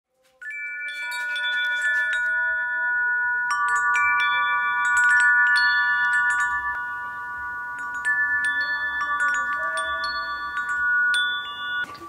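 Hanging metal tube wind chime ringing in the breeze: its tubes strike again and again, and their long, clear tones overlap into a steady shimmer. The ringing starts about half a second in and cuts off abruptly at the end.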